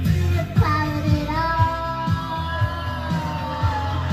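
A toddler singing a long held note over a loud rock backing track with a steady drum beat; the note starts about a second in and sags a little in pitch near the end.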